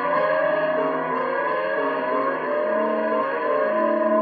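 Instrumental music led by an electric guitar played through echo effects, its notes sustained and sliding in pitch over other held notes beneath.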